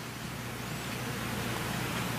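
Room tone: a steady, even hiss with a faint low hum, the background of a miked lecture hall's sound system.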